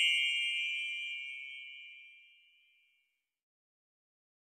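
A single bell-like ding that rings on and fades away over the first two seconds or so.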